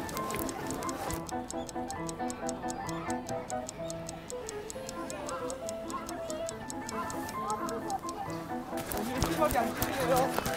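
Background music built on a rapid, even clock-like ticking, with short held notes over it.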